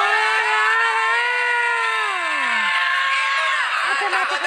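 A performer's voice through a stage microphone holding one long drawn-out note, then sliding down in pitch and trailing off about two and a half seconds in.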